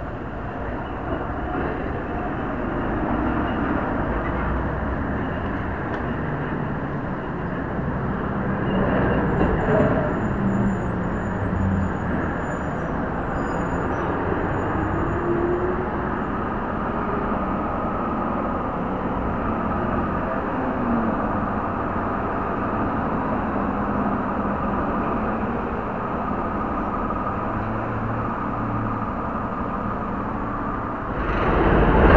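City street traffic, cars and trucks passing in a steady rumble, a little louder about nine seconds in, picked up by the small built-in microphone of a USB spy camera.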